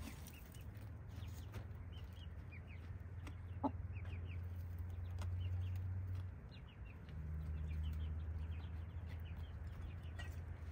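Buff Orpington hens dust bathing and clucking softly, with one brief louder call a little before halfway. A steady low hum runs beneath, dropping out briefly about two-thirds of the way through, and faint high chirps come and go.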